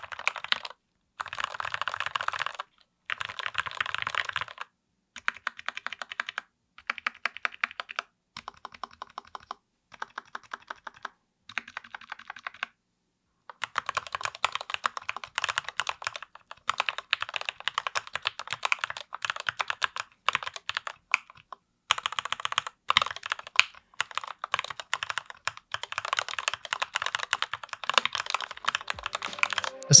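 Typing on a mechanical keyboard with Gateron linear red switches, lubed at the stem, in a transparent CNC-machined acrylic case with 1.4 mm PBT keycaps. Quick runs of keystrokes in short bursts with brief pauses, then near-continuous typing from about halfway through.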